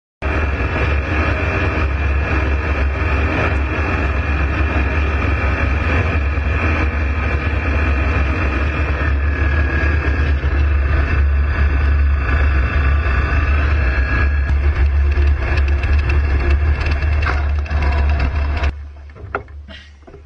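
Ultralight aircraft in flight: the engine and propeller make a loud, steady drone with a deep hum under it, its higher pitch shifting slightly in the middle. The drone cuts off suddenly near the end, leaving a few faint knocks.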